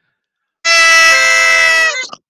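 Two party horns blown together in a loud, steady, reedy blare lasting just over a second. It starts about two-thirds of a second in, a second tone joins a moment later, and the pitch sags as it stops, with a brief extra toot after.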